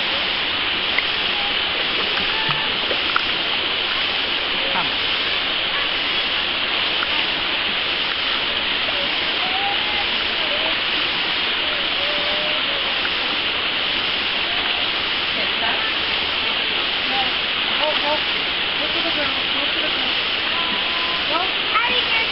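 Mountain stream rushing steadily over a rock shelf in a small cascade.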